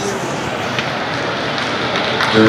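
Steady background hubbub of many people talking and moving in a large, echoing shopping-mall hall.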